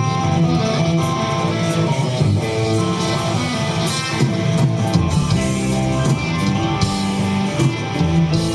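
Live rock band's electric guitars playing the opening of a song, held notes changing every half second or so, with a few sharp hits above them.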